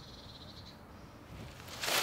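A wooden stick digging and scraping into muddy soil and dry leaves, rising to a loud burst of scraping and rustling near the end. A brief, high, rapidly pulsed trill sounds at the start.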